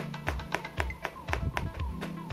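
A kitchen knife mincing garlic on a cutting board: quick, even taps of the blade on the board, about four a second, over background music.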